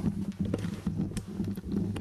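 Handling noise from a handheld phone: irregular small knocks and rubbing on its microphone as it is turned around, over a low steady hum.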